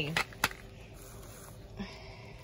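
Bubble wrap and a clear plastic candy cube being handled: two sharp clicks a quarter of a second apart near the start, then faint crinkling.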